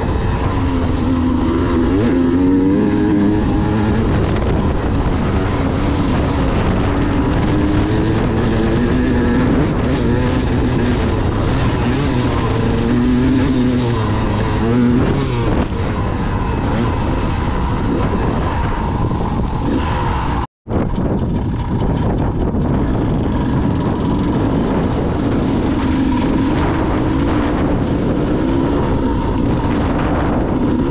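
2016 KTM 200 EXC two-stroke trail bike engine running while riding, heard from on the bike, its pitch rising and falling with the throttle. The sound cuts out for a moment about two-thirds of the way through.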